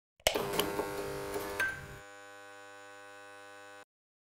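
Electronic logo sting: a sudden hit just after the start, then a ringing, buzzy chord that settles into a quieter steady hum about two seconds in and cuts off abruptly shortly before the end.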